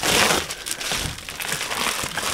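Packaging crinkling and rustling in the hands as a package is opened, loudest at the very start.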